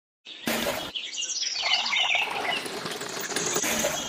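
Wet cement slurry sliding out of a small plastic toy mixer drum and down its plastic chute, a wet scraping, sloshing noise. A cluster of short high chirps sits in it between one and two seconds in.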